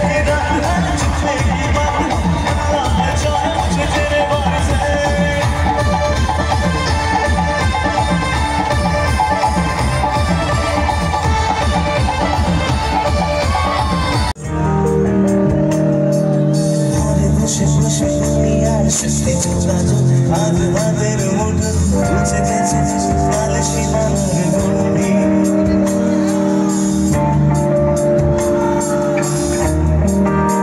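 Loud live band music over a PA system with a crowd, a fast, steady dance beat for the first half. About halfway through it cuts off abruptly and a different passage follows, with held chords and a singer.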